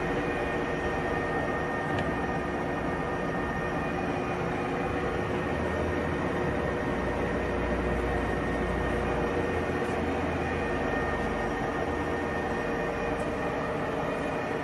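Sharpe 1880CL gap bed engine lathe running under power, its carriage driven along the lead screw on the engaged half nut: a steady hum of the gear train with a few steady tones over it.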